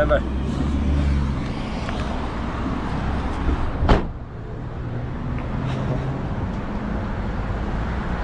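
A car's engine idling close by as its passenger gets out, with a single sharp thump about four seconds in; a steady run of street traffic follows.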